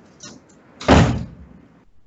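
A single loud thump about a second in, fading out over about half a second, with a faint click just before it.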